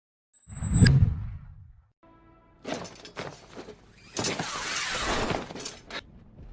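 An intro sound effect: a deep boom with a bright high ring, which dies away before two seconds. It is followed by anime action sound effects: a brief held tone, then a run of sharp clattering hits and a rushing whoosh.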